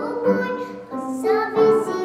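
A young girl singing a children's song in Russian, with piano accompaniment.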